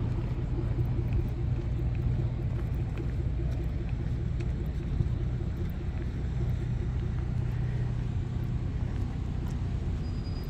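An engine running steadily: a low rumble with a fast, even pulse.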